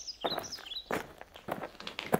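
Footsteps, about one every half-second or so, like a walking sound effect. Over the first half, short bird chirps fall in pitch.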